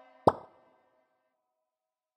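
The tail of an electronic beat's last plucked notes dies away, then a single short percussive hit about a quarter second in ends the track.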